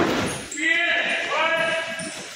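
A man's voice shouting two drawn-out calls, echoing in a large hall, over thuds and scuffs of feet on a wrestling mat.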